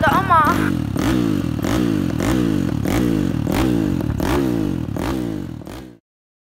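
An engine revved over and over, its pitch climbing and dropping back about three times every two seconds, fading out near the end.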